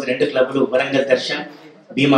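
A man speaking into a microphone, with a short pause near the end.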